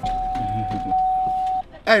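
A single steady electronic beep, one high tone held for about a second and a half and then cut off sharply.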